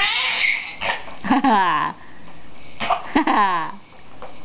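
Laughter in short bursts: a high rising squeal at the start, then two laughs that slide down in pitch, about a second and a half apart.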